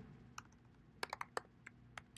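Computer keyboard keystrokes, faint: one tap, then a quick run of about six taps about a second in, typing a word into code.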